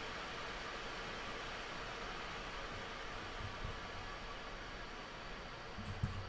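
Steady background hiss with no speech: room tone and recording noise, with a faint low thump about three and a half seconds in.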